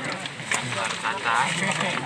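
Low, indistinct voices talking quietly.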